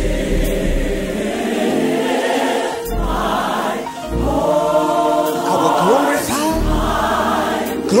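A gospel choir singing sustained chords in harmony over a band, with deep bass notes coming in about three seconds in and again later.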